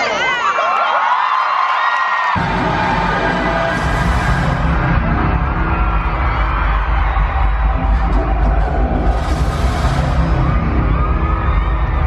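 Loud music over an arena PA, a deep bass beat coming in about two seconds in, with a crowd screaming and cheering over it in two swells.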